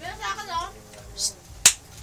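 A short bit of voice, then a single sharp click about one and a half seconds in.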